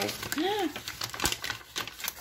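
Brown kraft paper wrapping and plastic packets of small tags rustling and crinkling as they are handled, with many light clicks and ticks. A short arching vocal exclamation comes about half a second in.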